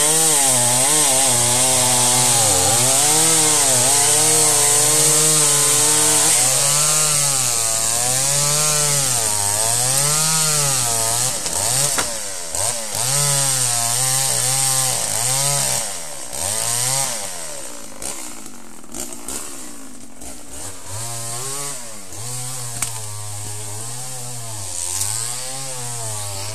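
Two-stroke chainsaw cutting through a fallen tree trunk, held at steady high revs, then dipping and rising about every second and a half as the chain bites and frees. It eases off for a few seconds past the middle, then picks up again. It is cutting to free another chainsaw left pinched in the trunk.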